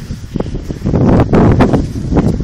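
Strong wind buffeting the microphone in uneven gusts, louder from about a second in.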